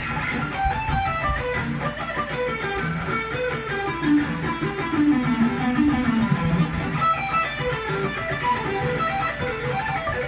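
Charvel electric guitar playing a pentatonic run slowly, one picked note at a time. It goes in a repeating six-note pattern that steps down in pitch across pairs of strings.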